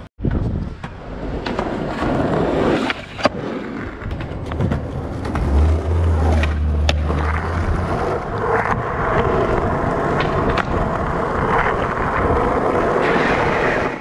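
Skateboard wheels rolling on rough, cracked street asphalt with a continuous rumble, broken by several sharp clacks of the board. A low hum joins in briefly around six seconds in.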